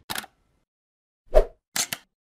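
Logo-animation sound effects: a short click at the start, a louder pop with a low thump about a second and a half in, then two quick clicks near the end.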